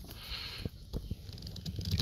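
Faint rustling with a few soft knocks and ticks from hands handling the convertible top's plastic latch handle and rail trim.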